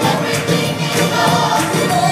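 Gospel choir singing full-voiced with instrumental backing and a steady beat, recorded live from the audience in a large, reverberant hall.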